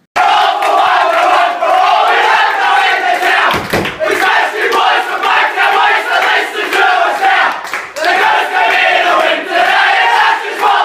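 A cricket team and junior players bellowing their club's victory song together, loud group shouted singing after a win, with a fresh loud surge about eight seconds in.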